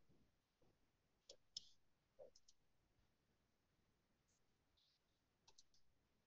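Near silence, with a few faint, short clicks scattered through it.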